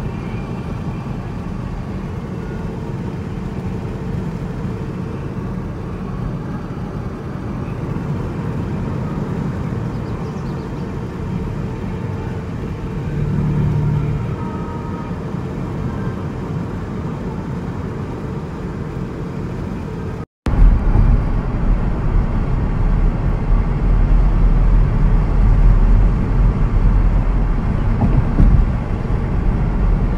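Steady road and engine noise inside a 10th-generation Honda Civic's cabin while driving, a low rumble of tyres on pavement. About twenty seconds in, the sound cuts out for a moment and comes back louder, with a heavier low rumble.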